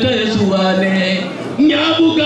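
A single voice, the loudest sound, in long drawn-out phrases, with its pitch held level for up to about a second at a time and a short break about one and a half seconds in.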